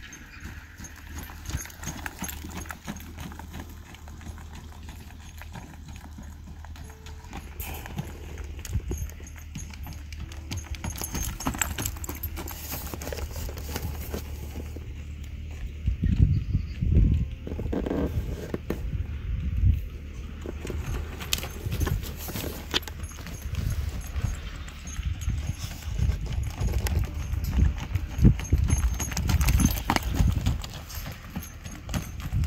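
Saddled paint horse trotting around a round pen, its hooves beating on soft dirt. The hoofbeats get louder about halfway through.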